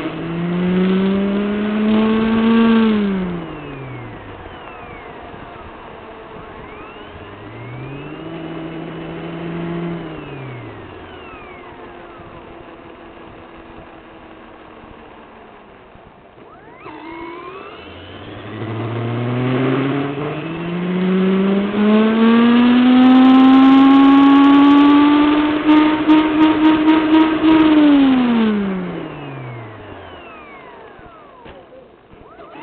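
An RC model car's motor whining up and down in pitch as the car speeds up and slows: a rise and fall at the start, a shorter one in the middle, and a long climb in the second half that holds high and pulses rapidly before dropping away near the end.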